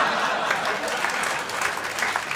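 Live theatre audience applauding and laughing after a joke, the clapping easing off toward the end.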